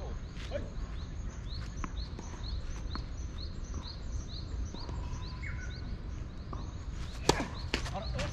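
Steady low wind rumble with a bird chirping over it, short rising chirps about three a second. About seven seconds in comes a single sharp crack of a tennis racket striking the ball, the loudest sound, followed by a lighter tap.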